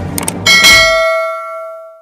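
Music with a beat stops about half a second in and gives way to a single loud bell-like metallic strike, which rings on with several clear tones and fades away over the next second and a half.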